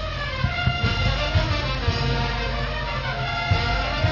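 A live brass band playing a lively tune, with held brass notes over a steady low beat.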